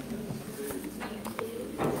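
Congregation chatting in overlapping voices while people greet and shake hands, with a few light knocks.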